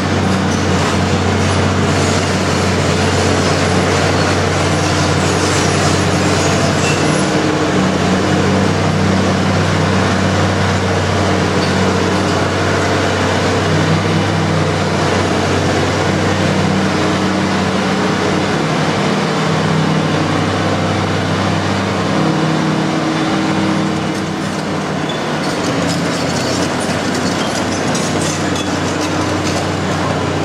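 Hitachi EX455 excavator's diesel engine running under load while its Indeco hydraulic breaker hammers rock: a dense, continuous clatter over a steady engine drone. The noise eases slightly about three-quarters of the way through.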